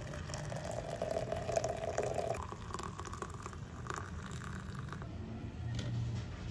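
Water poured in a steady stream into a glass French press over coffee grounds, rising in pitch as the press fills, and stopping about five seconds in.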